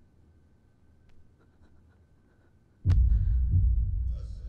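Quiet room tone with a faint steady high tone, then nearly three seconds in a sudden low boom that opens into a loud, deep rumble.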